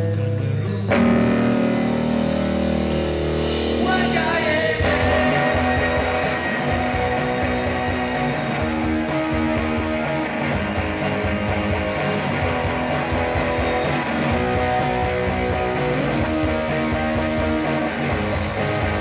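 Live rock band playing electric guitars, bass, drums and keyboard, with singing. It opens on held, sustained chords, and the drums and full band come in with a steady beat about five seconds in.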